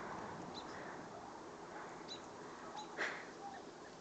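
Faint rustling of goats moving over dry grass, with a few short, high bird chirps and one brief sharp noise about three seconds in.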